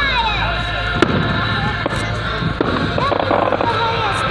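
Aerial fireworks going off: one sharp bang about a second in, then a couple of smaller pops.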